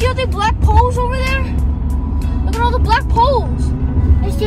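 Steady low road and engine rumble inside the cabin of a BMW driving at highway speed.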